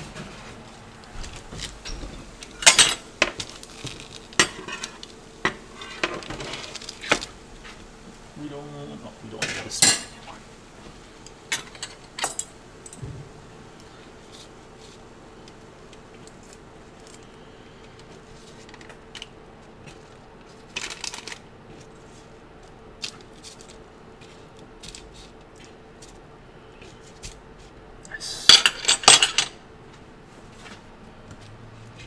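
Kitchen clatter of a metal baking tray and a fork as burger patties are turned over: scattered clinks, knocks and scrapes, loudest about 3 s in, about 10 s in and near the end, over a faint steady hum.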